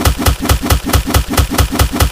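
A rapid barrage of punch-impact sound effects, about eight hard hits a second in an even, machine-gun-like rhythm.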